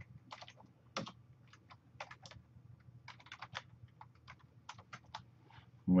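Typing on a computer keyboard: a run of quick, irregularly spaced keystrokes, with a faint low hum beneath.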